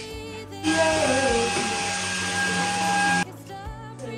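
A small electric motor runs with a steady whine for about two and a half seconds, starting shortly after the start and cutting off suddenly, over background music.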